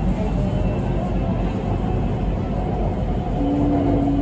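A Bangkok BTS Skytrain carriage running along the elevated line, heard from inside the car as a steady rumble of wheels and motors. A short steady hum joins near the end.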